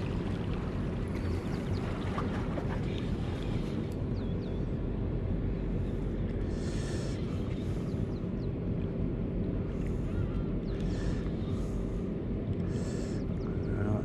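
Steady low rumble of wind and harbour water with a constant low hum running through it, and a few short hissing bursts, about seven, eleven and thirteen seconds in.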